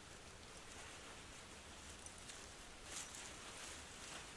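Mostly faint outdoor background, with a soft rustle of the nylon hammock and mesh bug net being handled about three seconds in.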